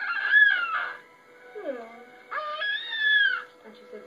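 Newborn baby crying: two wails about a second long each, one at the start and one just after halfway, each rising and then falling in pitch.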